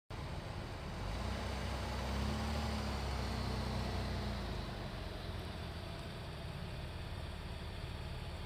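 A car's engine at low speed: a low rumble that swells over the first few seconds and then eases off, over a steady outdoor hiss.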